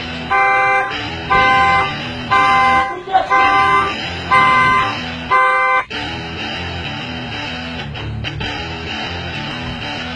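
Car horn sounding in even half-second blasts, about one a second, over background music. The blasts stop about six seconds in, and guitar-led music carries on.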